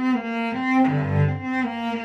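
Solo cello bowed in an improvised melody of sustained notes that step from one pitch to the next. About a second in, a lower note sounds under the melody for a moment.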